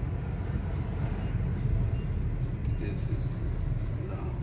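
Steady low rumble of a car driving in city traffic, heard from inside the cabin.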